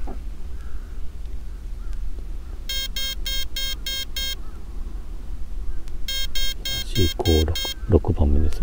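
An RC helicopter's electronic speed controller beeping in programming mode: two series of six short electronic beeps, each a little under two seconds long. The six beeps mark setting item 6, the BEC voltage setting, here set to full high (8.4 V).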